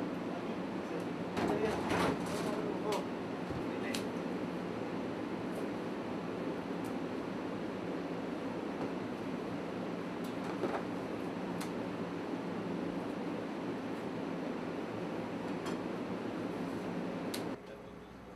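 Steady background hum of a busy indoor space, with brief murmured voices about two seconds in and a few light clicks. The noise drops suddenly near the end.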